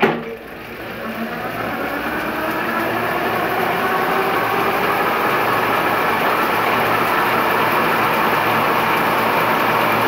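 Bafang BBSHD mid-drive e-bike motor under full throttle, driving the chain and spinning the lifted rear wheel up in the highest gear. It starts suddenly, rises in pitch and gets louder over about three seconds, then runs steady as the wheel holds at about 44 mph.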